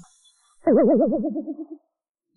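A cartoon-style 'boing' sound effect: one warbling tone that wobbles quickly up and down in pitch, starting about two-thirds of a second in and fading away over roughly a second.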